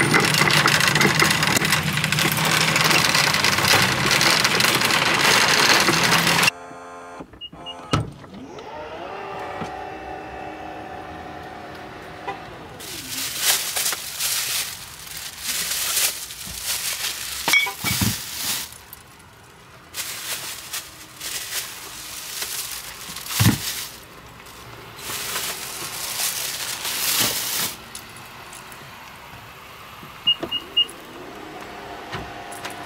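A loaded shopping cart rattling across parking-lot pavement. Then two short beeps and the rising whine of an SUV's power liftgate motor as it opens, followed by plastic shopping bags rustling and a few knocks as bags are loaded into the cargo area.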